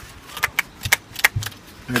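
Hand trigger-spray bottle being pumped to get it going: a quick run of short squirts and trigger clicks, about five in the middle second, into an empty plastic bin.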